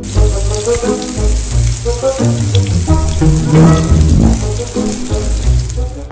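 Water running from a tap, an even hiss, over background music with a bass line; the water sound cuts off at the end.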